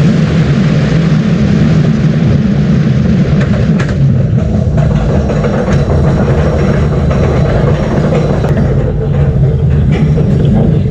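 Onboard roller coaster ride noise: a loud, steady rush of wind on the microphone over the train's low rumble along steel track. Scattered sharp clicks come in during the second half as the train climbs a chain lift hill.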